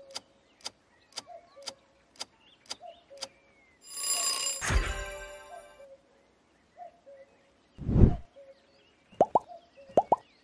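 Quiz sound effects: a countdown timer ticking about twice a second, then about four seconds in a loud bright chime-and-burst answer-reveal sound that rings on for about two seconds. Near eight seconds a low thumping whoosh marks the transition, followed by a few short rising blips.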